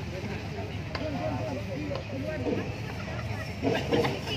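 Voices talking in the background over a steady outdoor crowd ambience.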